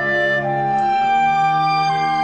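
Recording of a chamber orchestra playing a new orchestral piece: slow, held chords whose notes change one at a time.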